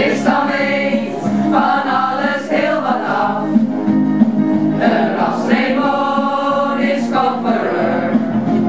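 A group of adult voices, mostly women, singing a song together over a steady instrumental accompaniment.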